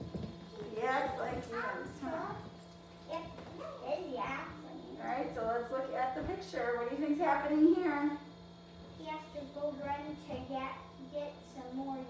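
Speech: young children's voices talking or reading aloud in a small room, over a faint steady hum.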